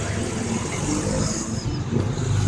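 Street traffic noise, a motor vehicle running on the road close by, heard as a steady, muffled rumble.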